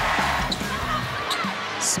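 Basketball arena sound: music playing over crowd noise, with a few short sharp knocks from the court.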